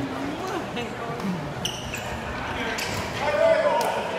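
Shuttlecock rally in a reverberant sports hall: sharp taps as the shuttlecock is kicked, a short shoe squeak on the court floor about halfway through, and players' voices calling out, loudest near the end.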